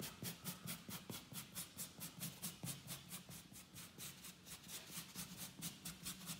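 Quick, faint back-and-forth rubbing strokes, about four or five a second, on the partly set joint compound at the edge of a drywall patch as it is feathered into the surrounding wall texture.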